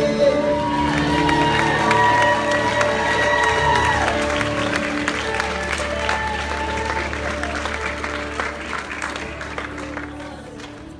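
Live worship band music on sustained held chords, with the audience clapping throughout; it gradually fades over the last few seconds.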